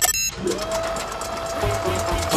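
Cartoon score music: a short, sharp sound opens it, then a single held note over a busy, noisy texture, with some low rumble near the end.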